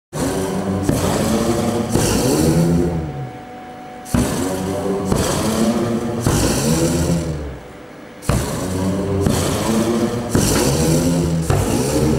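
LPG-fired pyrophone (flame-driven pipe organ) playing low, wavering notes of about a second each, with a hissing roar over them. The notes come in three phrases, each starting abruptly after a short lull.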